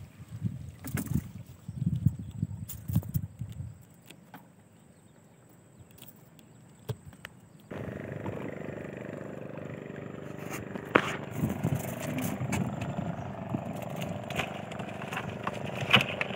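Rumbling wind gusts and splashing as a wire crab trap is hauled out of the water, with a few knocks. About eight seconds in, a boat's motor starts running steadily, with scattered clicks and clatter over it.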